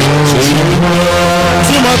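Live church worship music: keyboard and drums accompanying a sung hymn, with long held notes between the sung lines.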